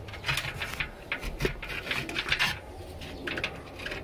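A bird calling, over many short scattered clicks and rustles.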